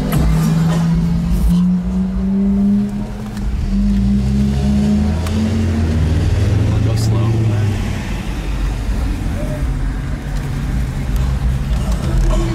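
Car engine running as the car drives in traffic, heard from inside the cabin, with music playing.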